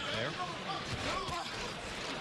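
Mostly a man's voice speaking over a steady background murmur of an arena crowd.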